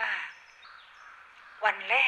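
A woman speaking Thai in a talk: she finishes a phrase, pauses for about a second and a half with only faint background hiss, then starts speaking again near the end.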